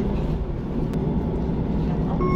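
City bus driving, heard from inside the passenger cabin: a steady low engine and road rumble, with a faint click a little under a second in.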